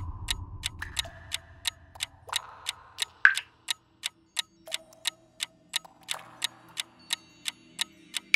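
Ticking-clock sound effect, about three even ticks a second, over faint held soundtrack tones that change pitch every second or two.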